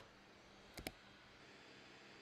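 Two quick clicks close together, about a second in, from clicking on the computer. Otherwise near silence with faint room tone.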